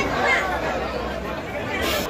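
Crowd chatter: many men's voices talking and calling over one another, with a brief hiss near the end.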